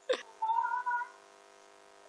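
Siberian husky whining: a short falling cry, then a steady high-pitched whine lasting about half a second.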